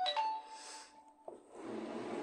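A chime or ding rings out suddenly: one clear tone held steady for about a second, then cut off, followed by a soft rushing noise.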